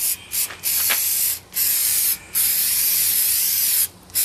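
Aerosol can of Duplicolor Bed Armor textured bedliner spray hissing as it coats a board. It sprays in several short bursts, then one long spray of about a second and a half.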